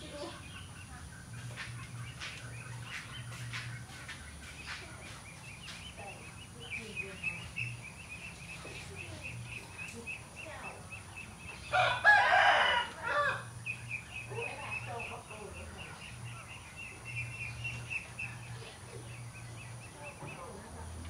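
A rooster crows once, loudly, about twelve seconds in, over a steady, high, pulsing trill in the background.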